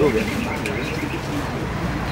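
A bird calling repeatedly, with people talking.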